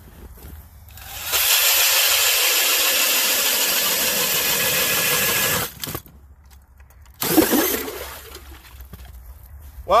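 A DeWalt DCD999 cordless drill spins a Strikemaster Mora hand ice auger through lake ice at full speed, a loud, steady grinding that lasts about four seconds and stops abruptly as the auger breaks through. A shorter burst of noise follows about seven seconds in.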